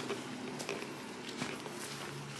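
Footsteps on a woodland dirt path, about one step every 0.7 seconds, over a steady low hum of held tones.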